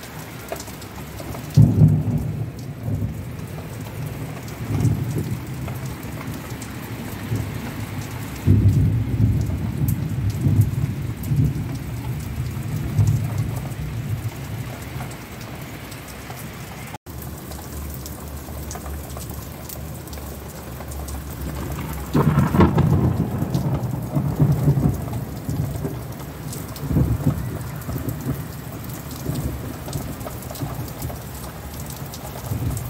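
Heavy rain pouring steadily, with thunder rumbling several times: about two seconds in, around eight seconds in, and a longer roll from about twenty-two seconds in.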